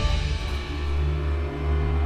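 Dramatic background score: a loud, busy passage dies away at the start, leaving low held tones.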